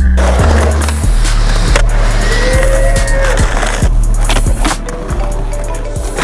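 Skateboard wheels rolling over pavement with sharp board clacks, over a hip-hop beat with deep, steady bass.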